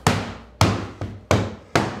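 Rubber mallet tapping wooden wedges four times, driving them in to lock a board square against a CNC spoil board. Each strike is a sharp knock with a short fading ring, about half a second apart.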